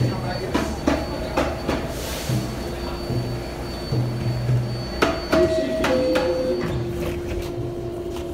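Subway station din around a standing train, with scattered knocks and clatter and a low hum. About five seconds in, a two-note chime steps down in pitch, the door-closing signal of a New York subway train, followed by a steady tone.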